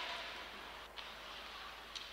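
Faint, steady background noise of an ice hockey game broadcast in a gap in the commentary, with one small click about halfway through.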